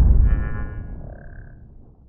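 Cinematic logo-reveal sound effect: a deep boom rumbling away and fading out over about two seconds, with a brief high shimmering ring in the first second or so.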